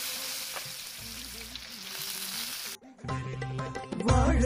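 Whole fish shallow-frying in hot oil in a pan, a steady loud sizzle that cuts off suddenly at about three seconds in. Background music with Indian instruments plays under the sizzle and carries on alone after it.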